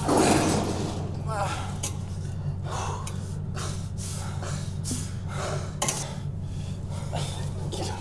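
A hurt man gasping for breath and groaning in short, broken bursts about once a second, over a steady low hum.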